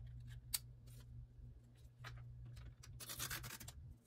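Quiet hand-handling of paper and stationery on a desk: scattered light taps and clicks, a sharp click about half a second in, and a brief papery scrape or rub about three seconds in, over a faint steady low hum.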